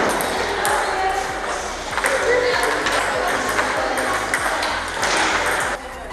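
Table tennis balls clicking off paddles and tables in quick, irregular succession, several rallies going at once, with voices in the background.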